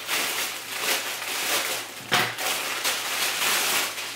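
Clear plastic packaging crinkling and rustling as it is handled, a continuous crackly noise with a louder crinkle a little past halfway.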